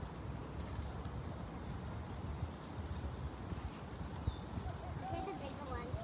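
Outdoor ambience with a steady low rumble and a few faint ticks; faint distant voices come in near the end.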